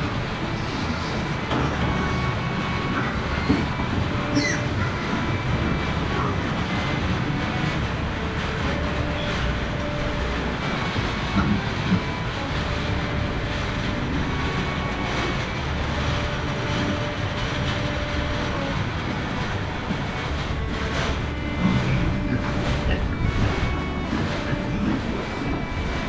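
Steady rumbling ambience of a pig fattening barn, with soft background music underneath. A few short metallic clinks come near the end.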